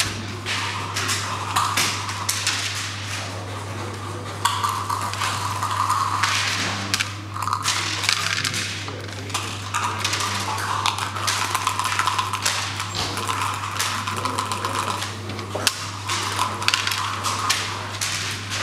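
Backgammon checkers clacking and sliding on a wooden board, with dice thrown onto the board: a long run of short sharp clicks and knocks. A steady low electrical hum runs underneath.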